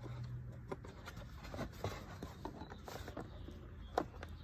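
Faint scattered clicks and rustles of hands handling the mower's plastic cover and primer bulb, with one sharper click near the end.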